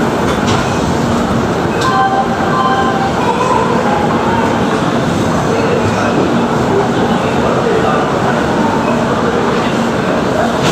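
Steady running noise of an Indian Railways express train, heard from aboard a passenger coach as it rolls into a station: a continuous rumble and rattle with no clear wheel-beat.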